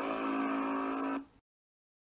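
An outro sound effect: a steady held tone with many overtones and a hiss above it. It stops abruptly about a second and a half in.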